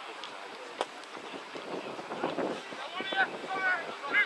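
Distant shouts and calls from players across a rugby league pitch, heard over wind on the microphone, with a sharp knock about a second in.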